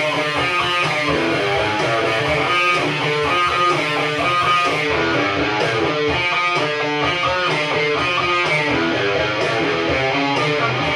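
Electric guitar playing an instrumental passage of a rock song, a steady run of picked notes over a low backing part, with no vocals.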